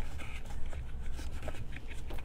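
Faint handling of white cardstock on a cutting mat: light rustling and a few small clicks over a steady low hum.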